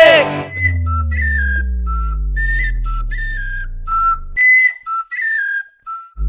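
A short whistled tune of clipped, bending notes over a deep bass tone that slowly falls in pitch. The bass cuts off suddenly about four seconds in, and the whistled notes carry on alone until just before the end.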